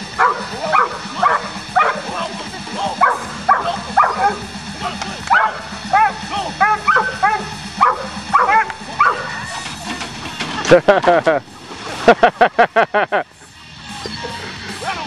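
A dog barking and yipping in short calls that rise and fall in pitch, two or three a second, with two fast runs of yelps in the last few seconds. Steady background music plays underneath.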